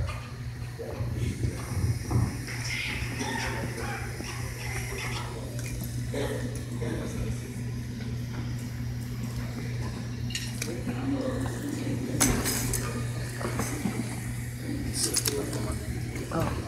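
Faint voices over a steady low hum, with a few brief clinks and clatters near the end.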